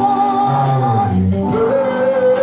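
Gospel music: voices singing over a keyboard, with sustained chords, a bass line stepping between notes, and a light regular beat.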